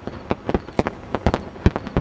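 Black plastic garbage bag crinkling as it is moved, giving irregular sharp crackles, about a dozen in two seconds.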